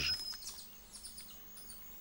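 Faint high-pitched chirps from forest animals, with a short thin whistle in the first half-second, over quiet rainforest ambience.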